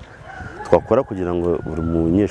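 A rooster crowing in the background: one long, slightly falling call, with a man talking over it from about a third of a second in.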